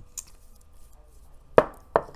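A faint click, then near the end two sharp clacks about a third of a second apart: makeup items being handled and set down on a hard surface.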